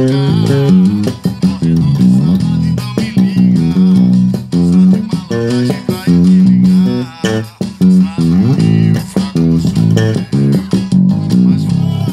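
Eight-string electric bass playing a forró groove: a steady run of plucked low notes.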